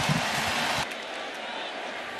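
Ballpark crowd cheering after a run scores. The cheering cuts off abruptly just under a second in, leaving a lower, steady crowd murmur.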